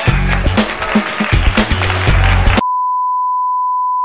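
Upbeat intro music with a steady drum beat, cut off suddenly about two and a half seconds in by a steady, loud, single-pitched test-tone beep of the kind played with TV colour bars.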